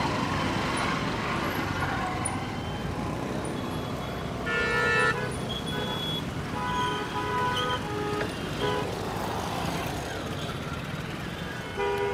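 Idling and moving traffic of motorcycles, scooters and cars, with vehicle horns honking over it. The loudest horn sounds about four and a half seconds in, and several shorter honks follow between about six and nine seconds.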